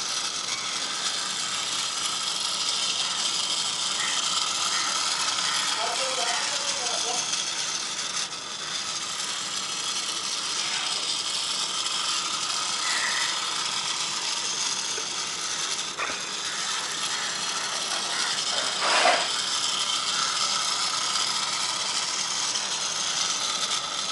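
Small electric motor of a solar-powered toy airboat spinning its plastic propeller: a steady, high-pitched whirring buzz, with one brief louder sweep about three quarters of the way through.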